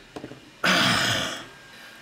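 A man clearing his throat once, a rough burst of under a second about halfway in, after a few faint clicks.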